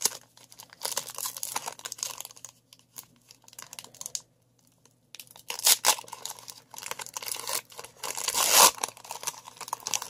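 Foil trading-card pack wrapper being torn open and crinkled by hand, crackling in irregular bursts. There is a brief pause about four seconds in, and the loudest tearing comes near the end.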